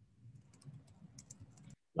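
Faint, irregular clicking of computer keyboard typing picked up on an open microphone, cutting off suddenly near the end.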